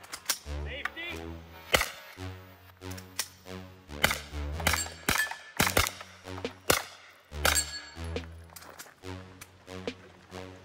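Pistol-caliber carbine shots, about a dozen at uneven intervals, over background music with a steady beat. The carbine is starting to malfunction, which turned out to be a broken buffer.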